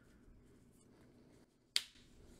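Quiet handling of a trading card on a deck box, with one sharp click near the end as the card is laid on the playmat.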